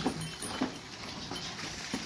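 Low, indistinct sounds of a Murrah buffalo being led on a halter rope across the shed floor.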